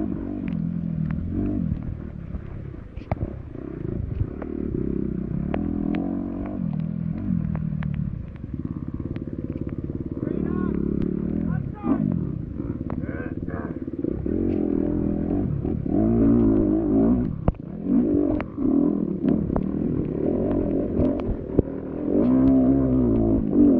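Off-road dirt bike engine revving up and down as it accelerates and slows on a muddy trail, heard from a camera mounted on the bike, with frequent knocks and clatter from the bike over rough ground.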